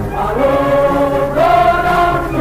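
Choir music: a choir singing long held notes, the melody stepping up about two-thirds of the way through.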